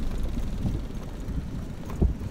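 Wind buffeting the microphone of a bicycle-mounted camera as the bike rolls over a concrete pier, a steady low rumble.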